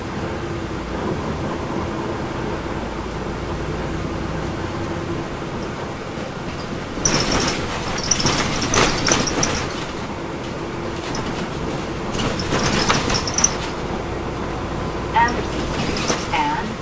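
Inside a NABI transit bus under way: the Cummins ISL9 diesel engine's steady drone mixed with road noise. There are two louder, noisier stretches, about seven and twelve seconds in.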